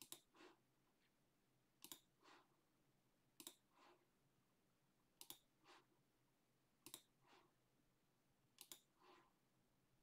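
Faint card-play sounds of a computer bridge program as the remaining tricks are played out: six times, about every 1.7 seconds, a sharp click followed by a softer, falling swish.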